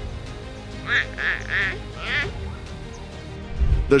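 Four short, wavering animal calls over quiet background music: three in quick succession about a second in, then one more shortly after.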